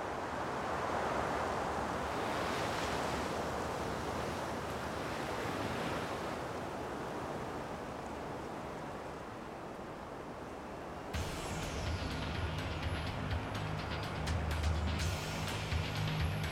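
Steady rushing sound of ocean surf, then music with a deep bass line and beat cuts in abruptly about eleven seconds in.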